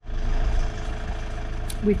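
Camper van's engine idling after pulling over at the roadside, a steady low rumble that starts suddenly.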